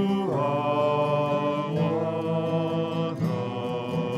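A solo voice singing a slow song, holding three long sustained notes in turn, over instrumental accompaniment.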